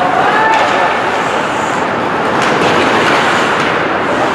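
Ice hockey rink sound during play: a steady noise of skates on the ice and the arena, with a few sharp clicks of sticks and puck about two and a half and three and a half seconds in.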